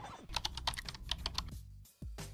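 A quick run of about ten sharp clicks in roughly a second, over a low steady hum that fades out near the end.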